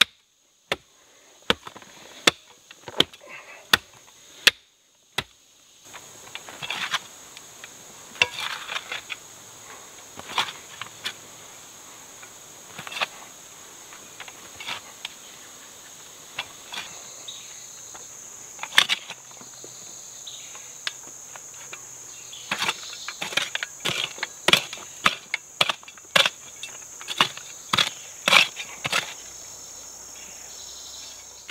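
Short-handled folding entrenching tool chopping into clay soil: sharp strikes about one every three-quarters of a second for the first five seconds, then irregular strikes and scrapes. A steady, high insect chorus runs behind from about six seconds in.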